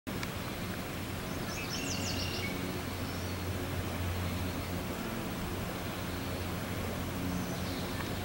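Outdoor ambience with a steady low hum. A small bird gives a quick run of high chirps about two seconds in, and a fainter one near the end.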